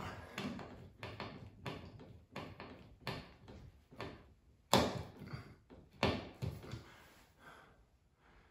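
Hand Phillips screwdriver driving a small screw into a metal light-fixture mounting bracket in a ceiling electrical box: a run of irregular clicks and taps, the sharpest about five and six seconds in.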